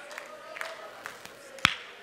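One sharp hand clap near the end, over a faint steady held tone and quiet room sound.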